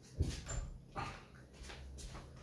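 A soft thump, then a few brief faint sounds from a pet cat.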